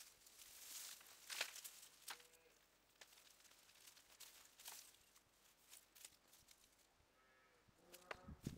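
Faint rustling and crumbling of dust-dry soil and potato roots being pulled apart and broken up by hand, with a few sharp crackles, the loudest about a second and a half in.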